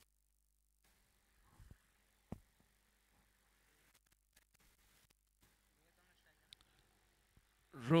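Near silence from the broadcast feed, broken by a couple of faint knocks and faint distant voices, before a commentator starts speaking near the end.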